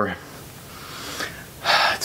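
A man breathing between phrases: a soft, drawn-out breath, then a short, sharp intake of breath near the end.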